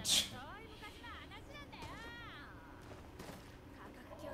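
Speech only: subtitled anime dialogue, a voice talking in Japanese at fairly low volume, opening with a short sharp hiss.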